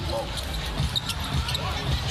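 Basketball being dribbled on a hardwood court, a run of short low bounces, over the steady noise of an arena crowd.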